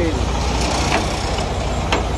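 Heavy diesel semi-truck engine idling, a steady low rumble, with a single sharp click near the end.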